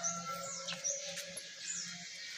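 Small birds chirping: a few short, high, downward-slurred calls, over a faint steady low hum.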